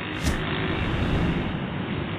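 Wind buffeting the camera microphone, a steady rushing noise with a rumbling low end, and a brief high hiss about a quarter second in.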